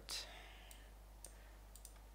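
Four faint computer mouse clicks, spread out, the last two close together.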